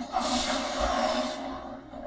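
Action sound effect from an animated show: a hissing energy blast bursts out just after the start and fades over about a second and a half, over a quiet background score.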